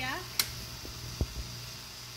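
Steady low electrical hum with a faint hiss from the running vacuum pump and microwave of a home-built plasma treater. A sharp click comes about half a second in and a short dull thump a little after a second, as the Variac knob is handled.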